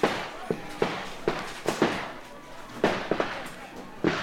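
A series of sharp, irregular bangs, about nine or ten in four seconds, each with a short ringing tail.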